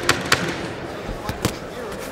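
Boxing gloves landing in sharp slaps during an exchange of punches: two quick ones just after the start and two more about a second later. Under them runs the steady murmur of an arena crowd.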